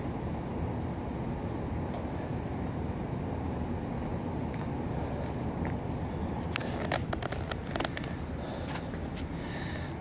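Steady low background rumble of a gym room, with several sharp clicks and knocks about seven to eight seconds in.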